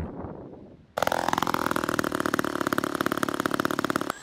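Small model-airplane gas engine starting abruptly about a second in, rising briefly in pitch and then running steadily with a fast, even buzz.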